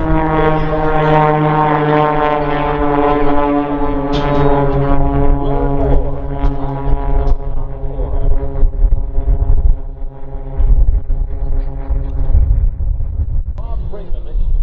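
Propeller aerobatic planes, an Extra 330SC and a red biplane flying in formation, droning steadily overhead; the engine note fades over the second half. Heavy wind buffets the microphone throughout.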